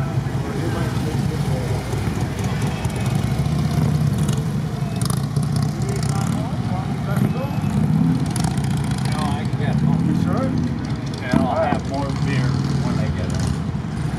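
Street traffic with motorcycles going past: a continuous low engine sound whose pitch slowly rises and falls, with indistinct voices now and then.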